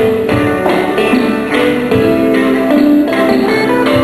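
Live band music playing continuously, with held melody notes changing every half second or so.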